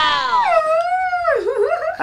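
A dog howling: one long call that slides down in pitch, then wavers near the end.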